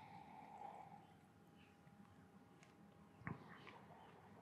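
Near silence: room tone, with a faint sip from a glass in the first second and a soft click a little after three seconds in.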